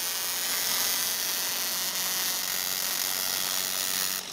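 Spark plug on an MSD capacitor-discharge ignition firing in multiple-spark-discharge mode, several sparks across the gap on each trigger: a steady, fast crackling buzz.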